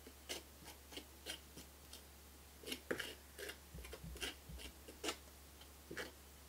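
Small palette knife dabbing and scraping thick paint onto a textured wooden plaque: a string of faint, irregular short taps and scrapes, a little denser in the second half.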